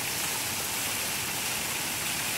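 Water spilling over the ledges of a stacked red-rock fountain and splashing into its pool, a steady, even rush.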